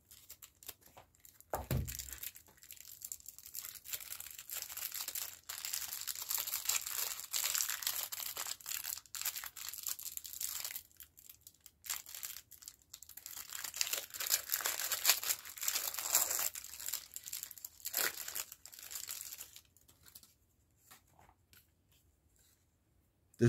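Clear plastic packaging wrap being torn open and crinkled by hand, in irregular bursts of crackling from about two seconds in until near the end.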